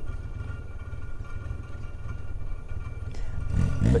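Steady low rumble of outdoor riverside ambience, growing louder near the end.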